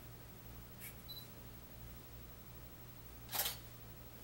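A camera taking a photo: a short high beep about a second in, then one sharp shutter click near the end.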